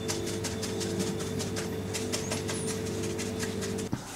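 A brush dabbing and scrubbing soapy water around the bolts of a pressurised autoclave lid, a leak test, in short light strokes several times a second. Under it runs a steady mechanical hum that cuts off just before the end.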